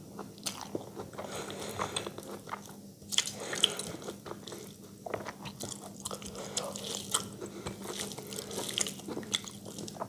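Close-miked eating sounds of rice and curry being eaten by hand: wet chewing with irregular small mouth clicks and snaps, and soft squishing as fingers mix rice on a steel plate. A faint steady hum runs underneath.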